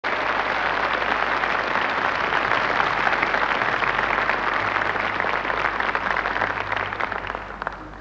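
Large audience applauding in a concert hall, the clapping dying away near the end.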